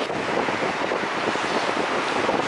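Strong wind buffeting the camera's microphone: a loud, steady rushing roar with no pauses.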